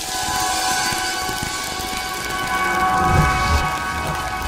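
Sound design for an animated station logo: a held shimmering chord of several steady tones over a rushing, rain-like noise. Low rumbling thumps come in about three seconds in.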